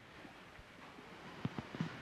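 Faint room noise of an audience settling into seats in a hall, with a few soft knocks and shuffles.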